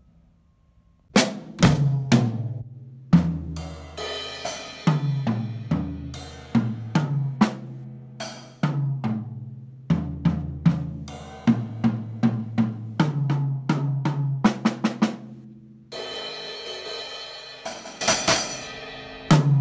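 Acoustic drum kit played in strokes and short fills: snare, tom and bass-drum hits with cymbal crashes. It starts about a second in, and the cymbals ring on continuously near the end.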